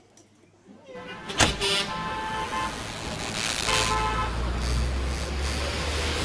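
Title-sequence sound effects. After about a second of near silence there is a sharp click, then a held buzzing tone, and a low rumble that swells toward the end.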